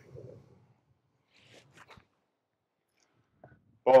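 A golf wedge shot heard faintly: a few brief, quiet scratchy clicks about one and a half to two seconds in, as the club swings through and strikes the ball off the turf. Otherwise it is quiet.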